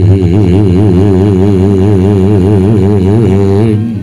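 A low male voice holding one long sung note with a wide, even vibrato, stopping shortly before the end.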